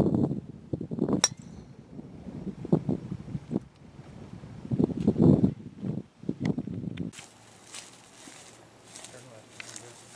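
A golf club striking a ball: one sharp click about a second in. Louder low rumbling bursts come and go around it.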